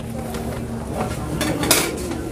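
Metal kitchenware clattering, with a few light clinks about a second in and a louder clatter lasting about half a second near the end, over steady market background noise.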